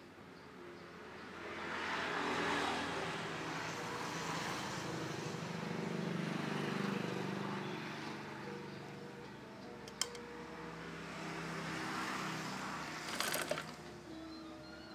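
A motor vehicle's engine passing by, swelling up over the first couple of seconds and fading slowly. It is followed by a single sharp click and then a short rattle of clicks near the end.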